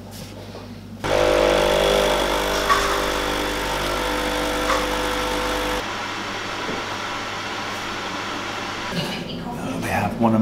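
Espresso machine pulling a shot: its pump starts with a sudden, steady hum about a second in and runs on as coffee flows into the cup, dropping somewhat in level a little past halfway.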